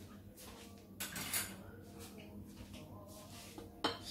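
A few light knocks and clinks of dishes and utensils being handled on a kitchen counter, the loudest about a second in and another just before the end.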